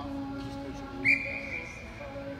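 Rugby referee's whistle blown once: a sharp blast about a second in, held for about a second on one high pitch.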